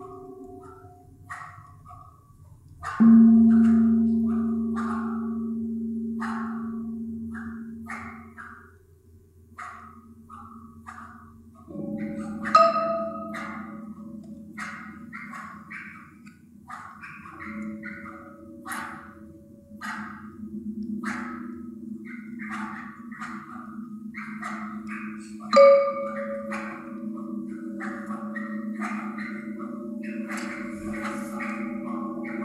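Percussion ensemble playing sparse, scattered short strokes on high-pitched metal percussion, with three loud deep gong strokes about three, twelve and twenty-five seconds in, each ringing on for several seconds.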